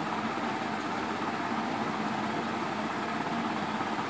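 Steady room noise: an even hiss with a faint low hum and no distinct events.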